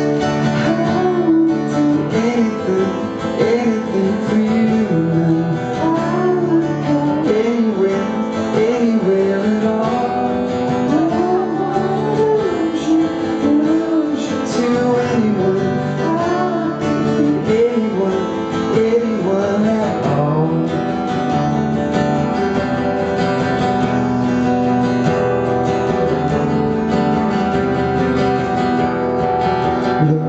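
A man singing a slow song over strummed acoustic guitar, performed live.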